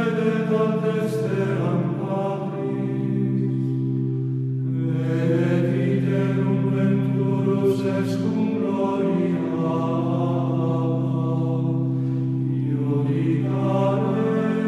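Slow, chant-like choral music: voices holding long notes over steady low tones, in unhurried phrases.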